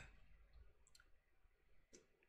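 Near silence with a couple of faint clicks, about a second in and again near the end, from a plastic drink bottle being handled and lifted for a drink.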